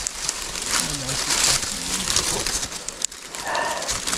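Rustling of dry grass and reeds and water splashing as a hooked snakehead is drawn in through the shallows to the bank. The noise is continuous and uneven.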